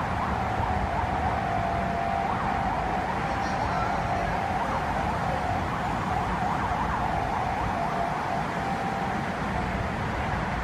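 Heavy city street traffic with a low, constant rumble of engines, and a steady high tone laid over it that fades out near the end.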